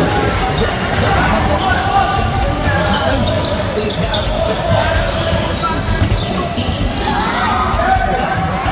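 A basketball being dribbled on a hardwood court, with many short bounces, under constant crowd chatter and shouting in a large gym.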